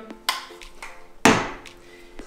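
Two knocks of a camera lens being set down on a wooden table, a light one just after the start and a louder, sharper one a little over a second in, over faint background music.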